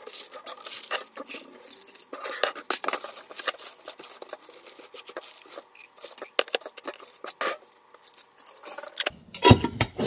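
Dried maraschino cherry pieces being tipped off a dehydrator sheet into a glass mason jar: a steady run of small clicks and ticks against the glass, with the sheet scraping and rustling. A louder knock comes near the end.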